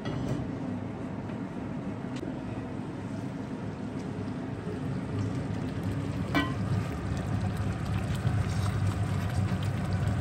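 Thick egusi-and-tomato stew bubbling in an enamelled cast-iron pot, a steady simmer that gets louder once the pot is uncovered and stirred with a wooden spoon about halfway through. A single clink sounds just after six seconds.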